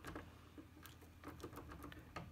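Faint, irregular small clicks from a Turbo Decoder HU100 lock decoder as its wheels are turned back and forth in an Opel/Chevrolet HU100 door lock, each pump pressing the lock's wafers toward the second stop point.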